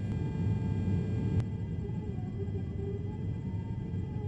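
Steady low rumble of a refuelling tanker aircraft in flight, heard from inside the boom operator's compartment while the boom is connected to a receiving fighter, with a single sharp click about a second and a half in.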